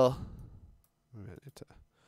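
A man's voice trailing off, then a short mumble and a sharp computer-mouse click about one and a half seconds in, from the right mouse button opening a context menu.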